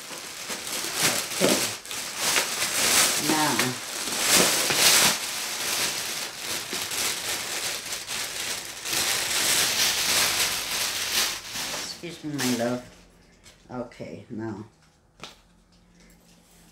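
Clear plastic wrapping crinkling and rustling as it is handled and pulled off an item being unpacked, dying down about twelve seconds in.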